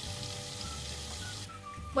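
Soft background music over a steady sizzling hiss of food cooking in a pan on the stove; the hiss thins out about a second and a half in.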